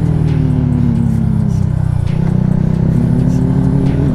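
Yamaha MT-125's single-cylinder four-stroke engine through an Akrapovic titanium exhaust with its baffle removed, heard on board. The revs fall as the bike rolls off for about two seconds, there is a brief break in the sound, then the revs climb steadily as it accelerates away.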